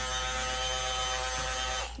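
Electric stick blender running steadily in a bowl of goat's milk lotion, its motor giving a constant even whine, then switching off just before the end.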